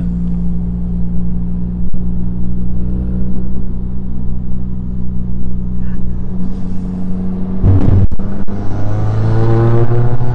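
Ford Fiesta ST's 1.6 turbo four-cylinder engine heard from inside the cabin, holding a steady low note while the car cruises. About eight seconds in, the note breaks off briefly, then rises steadily as the car accelerates.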